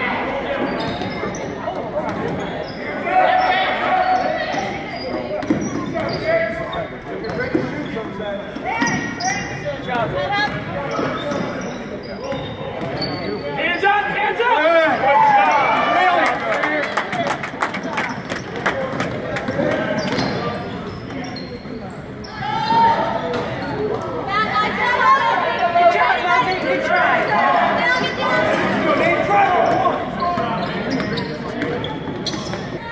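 Basketball bouncing on a hardwood gym floor, with a quick run of dribbles in the middle, under spectators' and players' voices echoing in a large gymnasium.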